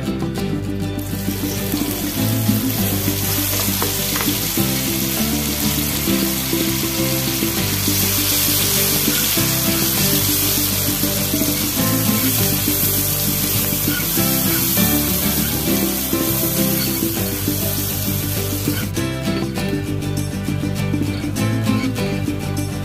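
Blended chili paste sizzling and spitting in hot oil in a wok as it is poured in and stirred, starting about a second in and cutting off near the end, over background music.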